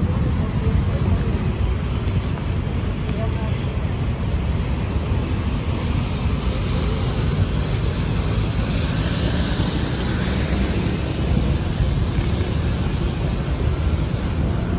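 City street traffic at a busy intersection: cars and a small truck passing, over a steady low rumble. A passing vehicle's hiss swells in the middle and fades, with indistinct crowd chatter nearby.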